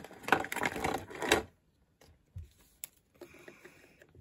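Small plastic toy parts rattling and clicking quickly as they are handled, for about a second and a half, followed by a single sharp click and some soft shuffling.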